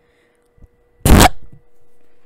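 A sudden, very loud, distorted burst of noise right on the microphone about a second in, lasting about a quarter of a second: a deliberate scare noise made into the mic.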